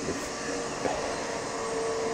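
A steady machine hum with one faint held tone running through it.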